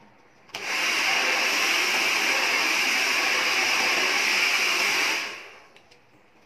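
Hand-held hair dryer switched on about half a second in, blowing steadily, then switched off near the end and fading out as its motor runs down.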